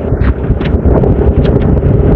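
Heavy wind noise buffeting the microphone of a moving motorcycle, with the motorcycle's engine humming steadily underneath.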